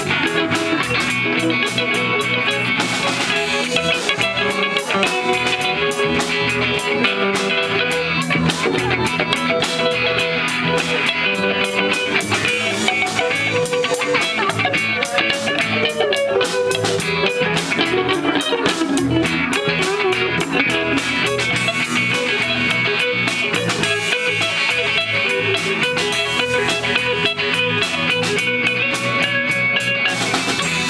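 Garage-style surf rock played live with no singing: two electric guitars through small amps, an electric bass and a Gretsch drum kit with cymbals keeping a steady beat, at an even loudness.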